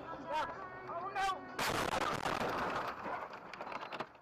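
Car crash heard from the crashing car: a sudden loud impact about a second and a half in, followed by about two seconds of rushing noise as the car ploughs into a roadside snowbank.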